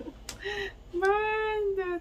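A woman's drawn-out, sing-song vocal exclamation: a short note, then one held note of about a second that rises a little and falls back.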